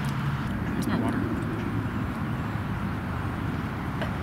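Steady low outdoor background rumble.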